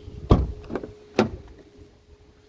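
A BMW X6 rear door being opened by its handle: a loud clunk as the latch releases, a few small clicks, then another sharp click a little after a second in.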